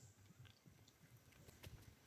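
Near silence, with a few faint clicks near the end.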